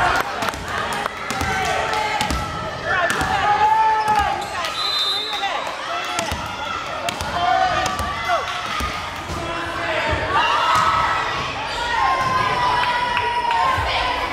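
Volleyball rally in a gymnasium: players and spectators calling and shouting over one another, with sharp smacks of the ball being hit at scattered moments.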